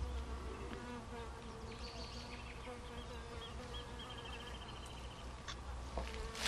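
A bee buzzing as it flies among flowering manzanita: a faint, steady wing hum that wavers slightly in pitch.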